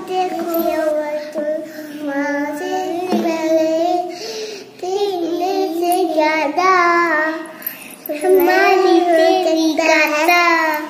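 Young girls singing a tune in child voices, with a laugh a few seconds in.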